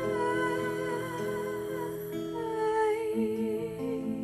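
A female voice sings two long, wavering wordless notes over an acoustic guitar, the second note starting a little past halfway.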